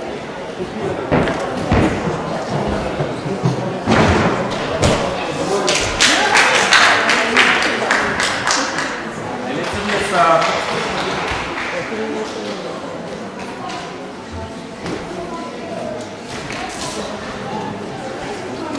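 Thuds of a small child's bare feet and hands landing on a gymnastics floor during a tumbling routine, several in quick succession in the first half and fewer later, with voices talking in the background.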